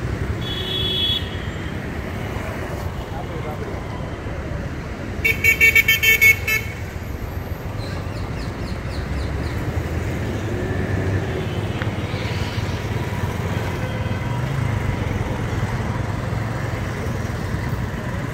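City street traffic, with motorcycles, scooters and auto-rickshaws running past. Vehicle horns sound over it: a short honk about half a second in, then the loudest sound, a rapid run of about five beeps, around five to six seconds in.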